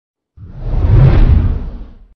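Logo-reveal whoosh sound effect: a single swell of rushing noise over a deep rumble. It starts a moment in, rises to a peak around one second and fades near the end.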